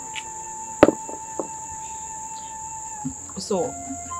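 Crickets chirring steadily at a high pitch over a single held note of soft background music, with one sharp click about a second in.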